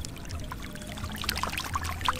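Catfish thrashing in shallow muddy water, a busy sloshing full of many small splashes.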